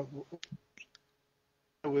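A few short, faint clicks over an online voice call, between a trailing 'uh' and a man starting to speak, with a stretch of dead silence between them where the call's audio cuts out.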